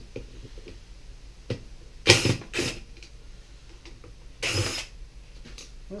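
Cordless drill unscrewing the screws of an electric motor's wiring cover plate, running in short whirring bursts: a few brief ones around two seconds in, and a longer one about four and a half seconds in.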